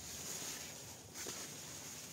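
Quiet background: a faint steady hiss with a thin high tone, and a soft faint rustle a little over a second in.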